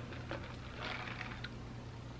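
Faint sips of iced coffee from a plastic cup, with a few small clicks, over a steady low room hum.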